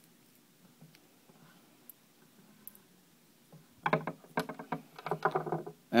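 A few faint small clicks of an Allen key working the screw of a nitro model engine's cooling head. About four seconds in, a man's voice, not picked up as words, is heard for about two seconds.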